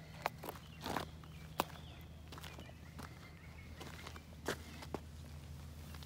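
Footsteps and rustling on dry leaves and garden soil, a few irregular crisp crunches and clicks, over a steady low hum.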